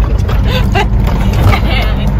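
Grain truck's diesel engine running with a steady low rumble, heard from inside the cab while the truck rolls slowly.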